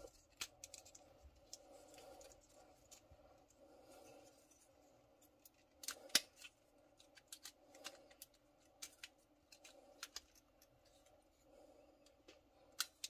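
Faint, scattered clicks and snaps of a Transformers Kingdom Waspinator action figure's plastic joints and tabs being moved during transformation, the sharpest click about six seconds in.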